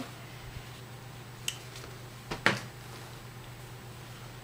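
Hands handling a white dust bag and care cards: a few small clicks and rustles, the sharpest about two and a half seconds in, over a steady low hum.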